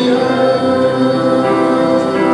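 A congregation singing a slow worship chorus together, holding long sustained notes.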